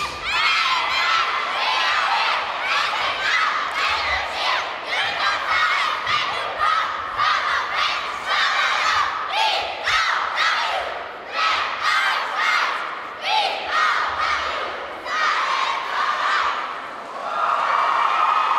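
A squad of young girl cheerleaders shouting a chanted cheer in unison, in short rhythmic bursts, with an arena crowd cheering along; no music.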